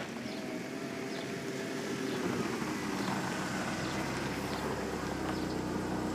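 A car's engine running as the car drives slowly up and comes close, growing gradually louder.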